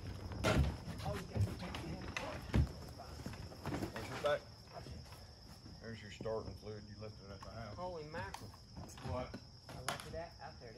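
A four-wheeler ATV being rolled off an enclosed trailer's ramp with its engine off: a couple of sharp knocks and thumps, the loudest about half a second and two and a half seconds in. There is faint talk, and a steady high insect buzz runs underneath.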